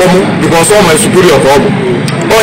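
A man talking: speech only, with no other sound standing out.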